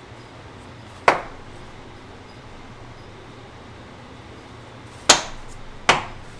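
Three sharp knocks of a wooden block being handled against the cast-iron drill press table and vise: one about a second in and two close together near the end. A low steady hum sits underneath.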